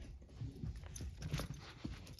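A small dog playing with a ball: a few short, low vocal sounds and soft thuds and scuffs of its paws on carpet.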